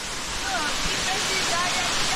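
Waterfall: a steady rush of falling water, with faint voices over it.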